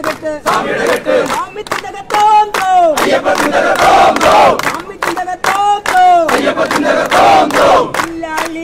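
A crowd of Ayyappa devotees chanting the deity's name together (namajapam) in loud drawn-out phrases that fall in pitch at the end, over steady rhythmic hand-clapping.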